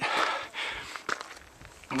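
A hiker breathing hard from climbing a very steep stair of old railroad ties, with a loud breathy exhale at the start, then footsteps on gravel and timber, including one sharp step click about a second in.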